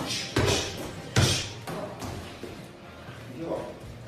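Kicks landing on a padded training partner: a thud about a third of a second in, a louder, sharper hit about a second in, and a lighter one shortly after.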